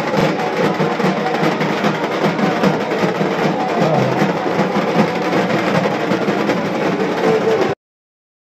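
Several Bengali dhak drums beaten with sticks in a fast, dense rhythm. The sound cuts off suddenly near the end.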